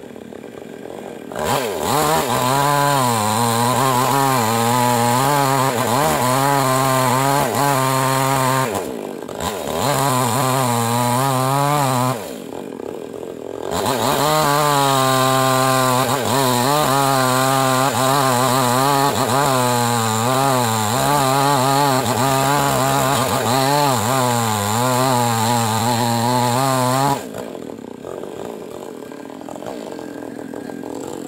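Yamamax Pro mini chainsaw running at full throttle while cutting wood, its pitch wavering as the bar loads and frees. It eases off briefly about nine seconds in, drops back for a second or two around thirteen seconds, and falls to idle about three seconds before the end.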